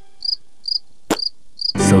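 Cricket-chirp sound effect marking an awkward silence: short high chirps about twice a second. One sharp click comes about halfway through, and a man's voice starts near the end.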